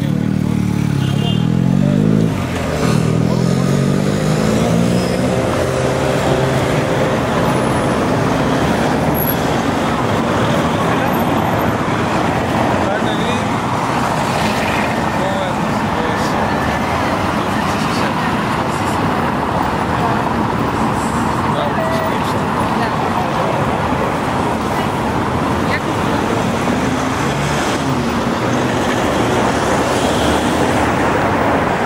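City street traffic with cars passing. In the first few seconds a vehicle engine rises in pitch a few times as it speeds up, then a steady, loud wash of traffic noise follows.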